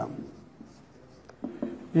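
Marker pen scratching faintly on a whiteboard as a line of Urdu script is written.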